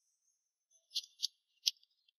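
Near silence, then three short, faint, high-pitched crisp ticks about a second in, the last the sharpest.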